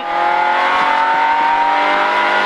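Citroën Saxo A6 rally car's engine heard from inside the cabin, accelerating hard along a straight, its pitch climbing steadily.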